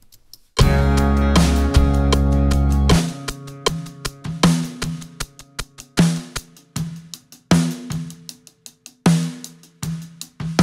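Recorded drum kit played back through studio monitors, with its triggered sample switched off. It opens with a loud held crash hit with ringing low tones for about two and a half seconds, then settles into a steady groove of kick, snare and cymbals.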